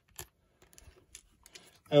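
Clicks of a Nikon DSLR's command dial being turned, stepping through the aperture values that the lens chip reports. There is one sharp click just after the start, then a few faint ticks.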